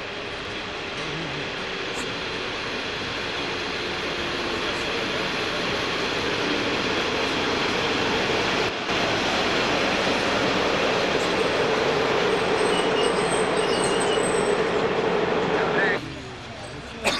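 Locomotive-hauled passenger train pulling into a station platform, its running noise growing steadily louder as it approaches. A steady tone in its noise grows stronger in the second half as the locomotive comes alongside.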